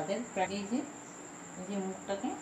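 A cricket trilling, a steady high-pitched tone under a woman's voice.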